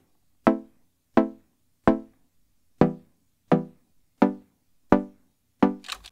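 Plucky Serum synth chords, a saw wave through a filter with a short envelope, playing a simple pattern: about eight short plucks, one roughly every 0.7 s, each dying away quickly and dry.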